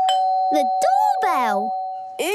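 Two-note doorbell chime (ding-dong), the higher note first, then the lower, both held ringing together for about two seconds. A voice sounds over it midway.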